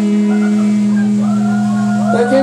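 Electric guitars and bass ringing out on a held final chord, one steady low note sustained after the last drum hits at the end of a rock song.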